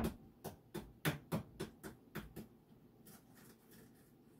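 Hard-boiled egg tapped repeatedly on a cutting board to crack its shell for peeling: a run of quick sharp taps, about three a second, that fade out after two and a half seconds, followed by faint crackling of the shell.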